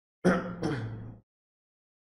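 A man clearing his throat: two quick rasps lasting about a second.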